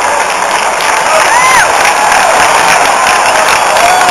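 Spectator crowd cheering and clapping, a loud, steady crowd noise with a few individual shouts and whoops rising and falling above it.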